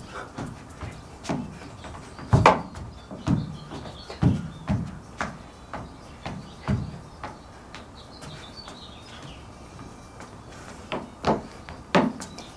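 Dance steps in flat shoes on a wooden deck: irregular thuds and stomps, a few of them much louder, with no music on the soundtrack. Faint birds chirp in the background now and then.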